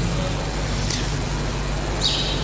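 Steady background noise with a low, even hum underneath, in a pause between spoken phrases.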